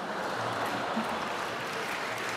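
Audience applauding steadily, a dense spread of many hand claps.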